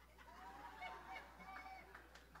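Faint laughter and murmured reactions from a congregation, several voices overlapping.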